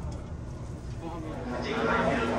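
Low running rumble of a train heard inside the passenger car, under a faint onboard PA announcement; a louder announcement voice begins near the end.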